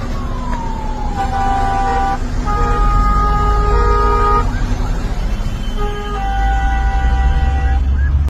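Vehicle horns sounding in three long blasts, the first about a second long and the next two about two seconds each, over heavy traffic and road rumble. A falling whine fades away in the first two seconds.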